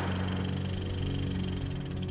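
The fading tail of a gunshot, then a steady low drone of held musical tones.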